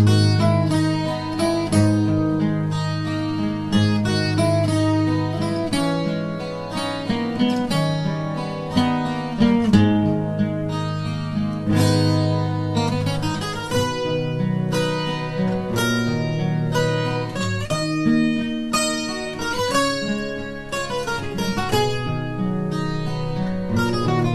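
Solo acoustic guitar playing picked notes and chords in a steady run, recorded through a webcam microphone.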